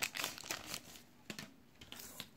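Foil and plastic card packaging crinkling and rustling as it is handled, busiest in the first second and then dying down to a few faint rustles.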